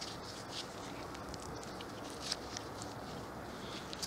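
Faint scratching and rustling of work-gloved hands handling a dirt-caked toy car, with scattered small ticks and one slightly louder scrape a little after two seconds in.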